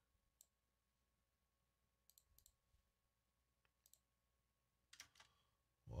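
Near silence with a few faint, scattered computer mouse clicks. The playback that was started is silent.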